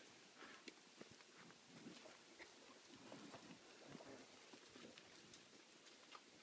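Near silence, with a few faint, scattered small clicks and knocks.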